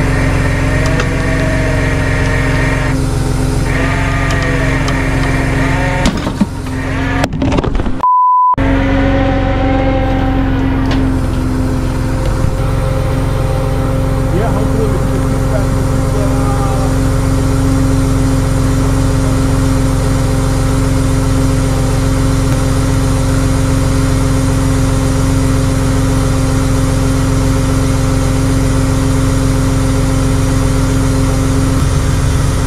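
Tow truck engine running steadily, its even hum carrying through, with indistinct voices over it for the first ten seconds. A short electronic beep cuts in about eight seconds in, after which the engine's steady hum is heard alone.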